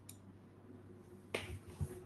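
A single sharp click a little past halfway, followed by a few soft low thumps, over a faint steady hum.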